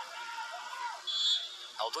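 Referee's whistle, one short blast about a second in, signalling that the free kick may be taken, over faint voices.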